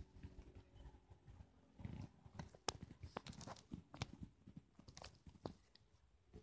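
Near silence, with faint scattered clicks and a low rumble; no siren is heard.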